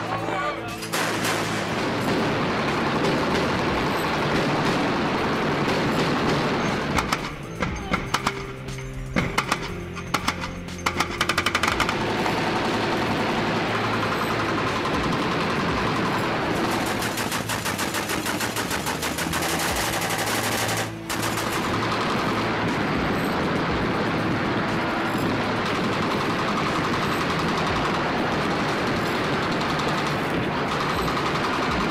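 Ship-mounted automatic gun firing long strings of rapid shots, with a stretch of more broken, separate shots about a third of the way in. Music plays underneath.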